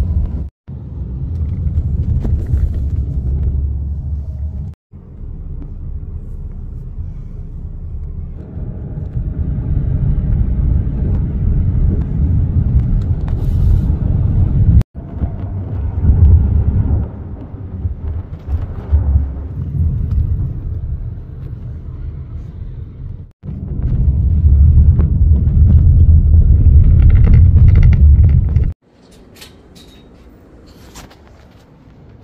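Low, steady rumble of a moving car heard from inside its cabin, loud and broken by a few sudden brief dropouts. Near the end it gives way to much quieter background sound.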